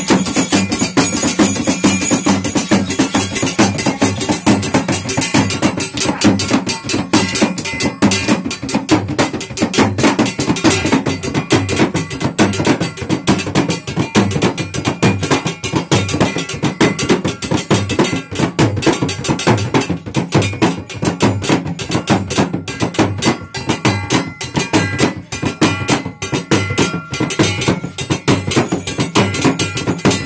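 Fast, continuous percussion of a Nepali shamanic (dhami-jhakri) ritual: rapid drum strokes with steady ringing metallic tones over them.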